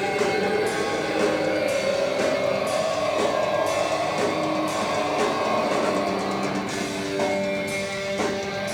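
Live metal band playing: distorted electric guitars over a drum kit, with a long held note in the middle, heard from within the audience.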